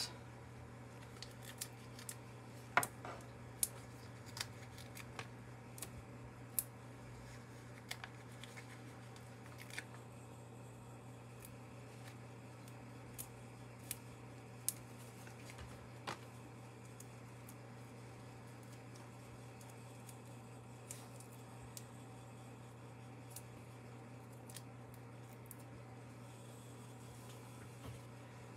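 Faint, scattered small ticks and taps of paper handling as foam dimensionals are peeled off their sheet and pressed onto a stamped cardstock panel, over a steady low hum.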